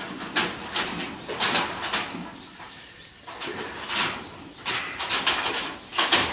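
Irregular clanks, knocks and rattles of corrugated metal roofing sheets being pried and pulled off an old roof frame, with a bird calling in the background.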